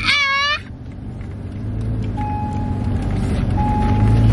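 Low, steady road rumble inside a moving car's cabin, growing a little louder, with a child's high-pitched shout in the first half second. Two long steady electronic beeps of the same pitch sound midway and near the end.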